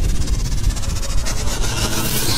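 Sound-design effects for an animated intro: a deep steady rumble under a rapid, fluttering high hiss.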